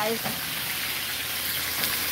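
Fish pieces sizzling steadily as they fry in hot oil in a pan on a gas stove. This is mutton snapper being flash-fried before it goes into a curry.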